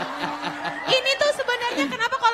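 A man chuckling and laughing, broken by short bits of speech.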